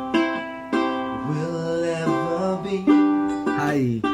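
Ukulele strummed in chords, with a man singing over it from about a second in.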